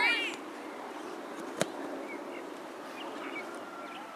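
A high-pitched shouted call that ends just after the start, then a single sharp thud of a soccer ball being kicked about a second and a half in, over a steady background murmur.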